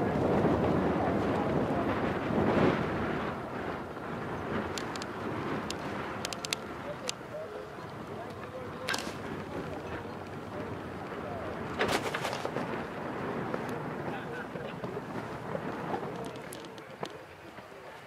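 Open-air arena ambience: wind buffeting the microphone and a murmur of distant voices, loudest in the first few seconds, with a few sharp knocks about halfway through and again a few seconds later.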